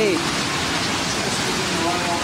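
Steady rush of ocean surf, waves breaking and whitewater churning.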